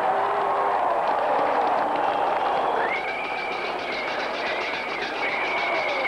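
Stadium crowd noise mixed with marching-band drumming in a steady rhythm. A high, wavering held tone enters about halfway through.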